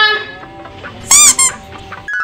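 A young woman's high-pitched whiny cry trailing off, then about a second in a short, loud, very high squeal, followed by a brief second one.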